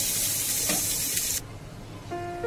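Sliced onion, tomato and dry coconut sizzling in hot oil in a frying pan, with a steady hiss and a brief spatula scrape. The sizzle cuts off suddenly a little over a second in.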